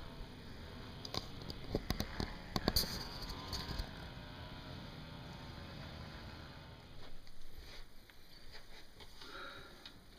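A few faint clicks and knocks from a hand-held camera being moved about, over a quiet background.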